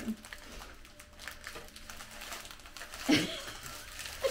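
Small plastic bags of diamond painting drills crinkling and rustling as hands shuffle them across the kit's canvas, with a short laugh about three seconds in.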